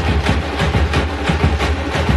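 A tamate (thappu) frame-drum band playing a fast, driving rhythm, many frame drums struck with sticks over a large bass drum, in a dense, unbroken stream of beats.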